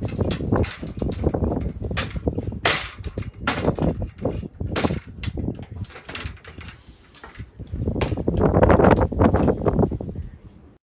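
Knocks, clicks and clatter from someone climbing up to a wall floodlight, with rustling that grows louder from about eight seconds in.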